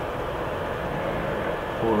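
Steady background hiss and hum with no distinct events, and a man's voice starting near the end.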